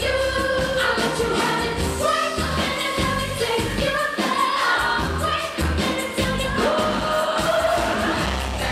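Live pop performance: a woman singing lead over a band with bass and drums.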